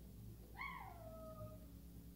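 A single faint high-pitched call that falls in pitch and trails off over about a second, over a steady low hum.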